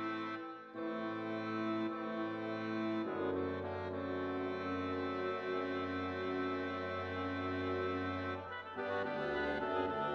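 Background music of slow, sustained chords, changing about every few seconds.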